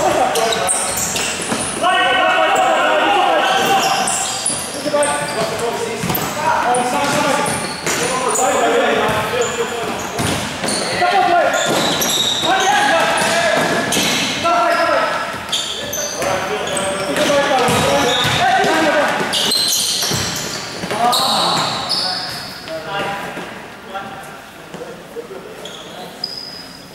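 Voices shouting across an echoing indoor futsal hall during play, mixed with the thud of the ball being kicked and bouncing on the court floor and short high squeaks. The shouting dies down near the end.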